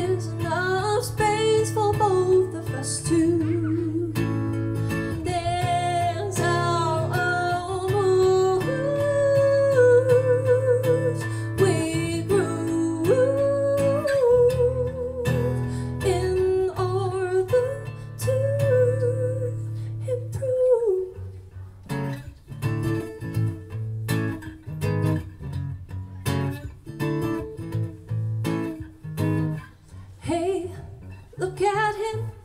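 A woman singing held, wavering notes over a strummed acoustic guitar. About two-thirds of the way through the voice stops and the guitar strums on alone in a steady rhythm.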